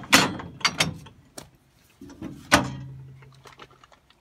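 Steel cattle head gate being worked: a run of sharp metal clanks, the loudest a little past halfway. A steady low tone sounds for about a second and a half in the second half.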